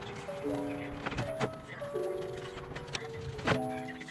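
Background music: a melody of short held notes that change pitch every half second or so, with sharp percussive clicks.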